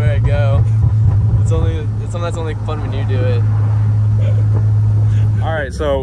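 BMW Z3 roadster driving with the top down: a steady low engine and road drone in the open cabin, with voices over it during the first few seconds. The drone drops slightly in pitch about two seconds in and breaks off near the end.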